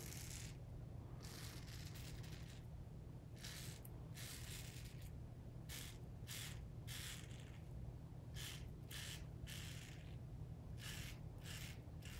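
RazoRock Game Changer 0.68 safety razor with a Feather blade scraping through lathered stubble on the cheek, in a series of short strokes about one or two a second.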